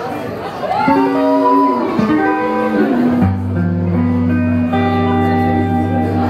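Electric guitar playing a slow intro live: single notes that bend and slide, then about three seconds in a held chord with a low bass note ringing under it.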